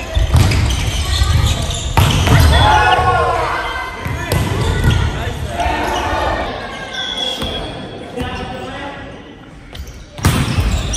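Indoor volleyball rally: sharp hits of the volleyball, several seconds apart, echo through a large gym hall. Players shout in a couple of bursts between the hits.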